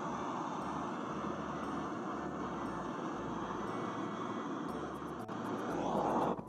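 Handheld gas blowtorch burning with a steady rushing hiss as it scorches the wood of a honeybee bait box, swelling slightly near the end.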